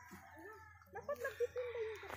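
A rooster crowing faintly, one drawn-out call in the second half.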